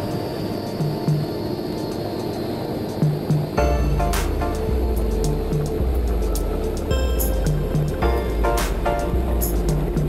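Background music with a steady beat; a deep bass comes in about three and a half seconds in.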